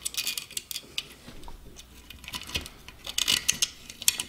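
Small metal bolts clicking and clinking against a thin aluminium case lid and a plastic fan frame as they are fitted, in a cluster of sharp clicks at the start and another about three seconds in.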